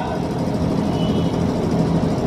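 Steady low rumbling background noise with no voice in it, like the hum of a running engine or machinery at an outdoor gathering.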